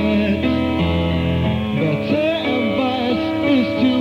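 Live band music: a man singing a gliding melody over guitar and sustained keyboard chords.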